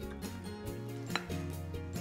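Soft background music with steady held notes, and a single light click about a second in as a small glass prep bowl taps a glass mixing bowl while chopped onion is tipped in.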